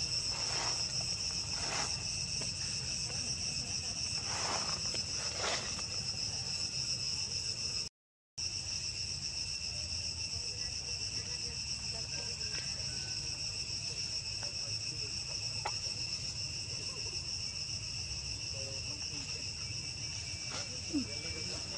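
A steady, high-pitched chorus of insects droning without a break, with a few short, fainter calls in the first six seconds. The sound drops out completely for a moment about eight seconds in, then the same insect drone resumes.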